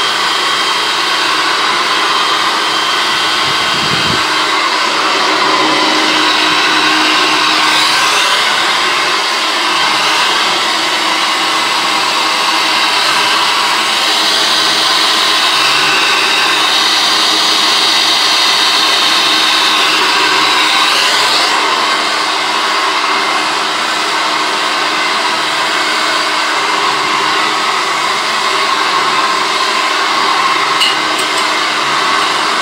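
Handheld hair dryer running steadily and loudly on its highest fan speed with medium heat, its tone shifting slightly a couple of times as it is moved around the head.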